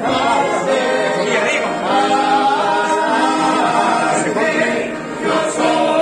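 Three men's voices singing a song together in harmony, several parts sounding at once, with some notes held and others moving.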